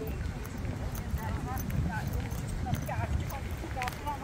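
Faint chatter of passers-by over a low, uneven rumble of wind on the microphone, with the footsteps of someone walking.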